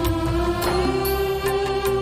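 Devotional Odia Jagannath bhajan music: one long held note that rises slightly and then holds, over a steady instrumental backing.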